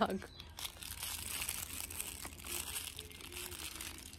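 Long fur rubbing and brushing against a phone's microphone as a large fluffy pet is hugged close, a steady rustling hiss with small irregular crackles.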